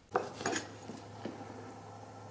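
A few light handling noises, small knocks and rubs of objects on a wooden workbench, in the first half-second, then only a faint steady hum.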